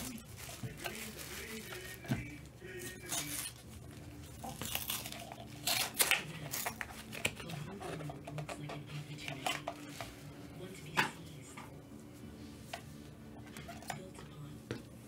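Plastic trading-card packaging being unwrapped and handled by gloved hands: wrapping rustles and crinkles, with irregular clicks and taps of hard plastic. The sharpest clicks come about six seconds in and about eleven seconds in.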